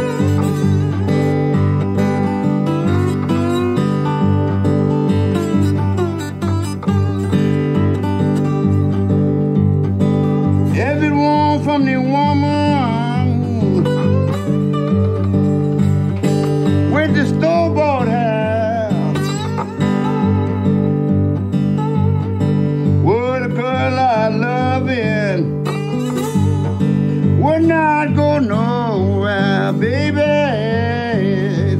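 Solo acoustic blues guitar in the old Memphis style: a steady, repeating fingerpicked bass, with gliding, wavering treble notes that come in several times from about ten seconds in.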